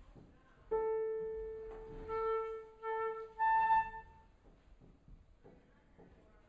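A single piano note, an A, struck and left to ring, followed by three short flute notes on the same pitch, each swelling and fading: a flute being tuned to the piano's A before a piece.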